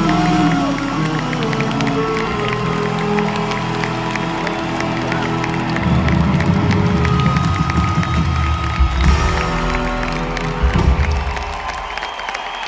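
A live band closes a song with electric guitar notes bending down over a held chord, then low notes swelling about halfway through and ringing out. A large arena crowd cheers and claps throughout.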